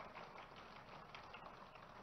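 Near silence: faint room noise.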